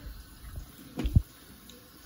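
Hands moving in a plastic tub of water, with small splashes and drips and a short thump about a second in.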